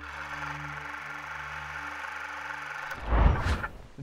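Show-intro transition sound effect: a steady hiss over low held notes, then about three seconds in a loud, low whoosh and rumble that dies away just before speech begins.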